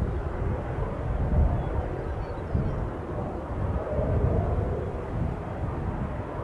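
Distant low rumble from the Starship SN4 prototype on its test stand during an engine test, a steady roar-like noise heard from afar with no sharp blast.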